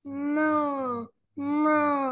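A person imitating a cow: two drawn-out "moo" calls, about a second each, sinking in pitch at the end of each.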